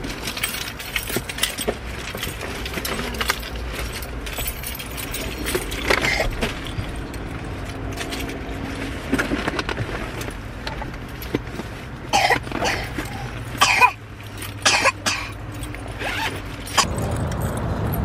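Rustling, clicks and knocks of bags and gear being handled inside a car, over a steady low hum. The handling is busiest about twelve to fifteen seconds in, and a louder steady rumble takes over near the end.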